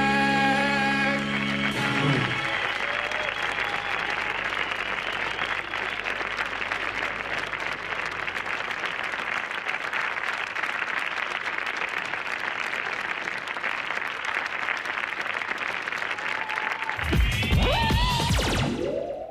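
A studio audience applauding at length after a sung folk-dance number, whose final held chord ends about two seconds in. Near the end a short electronic jingle with swooping tones cuts in over the clapping.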